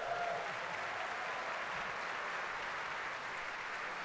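Concert audience applauding steadily at the end of a big-band jazz number.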